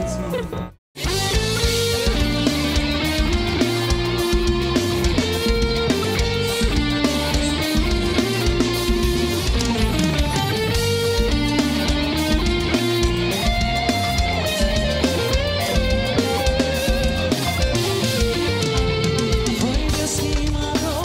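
Tagima TG-530 electric guitar, run through a BOSS GT-8 multi-effects unit, playing a single-note forró lead melody over a backing track with a steady beat. The sound cuts out briefly about a second in.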